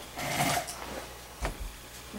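Handling noise on a clip-on lavalier microphone as it is fitted to clothing: a short rustle, then a single dull thump about a second and a half in. The mic is live and picks up the handling closely.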